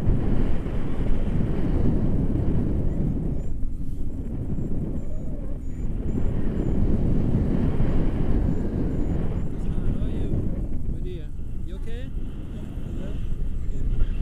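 Wind buffeting the microphone of a camera held out in the airflow during a tandem paraglider flight: a loud, steady low rumble. A voice is briefly heard near the end.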